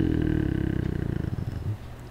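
A man's voice trailing off at the end of a long, falling hesitation hum into a low, crackling vocal fry that fades out shortly before the end.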